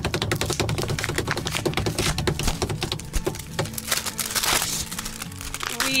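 Suspense music: a rapid, even drumroll of fast strokes over held low notes, thinning out about three seconds in.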